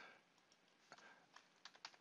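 Near silence with a handful of faint, quick computer clicks in the second half.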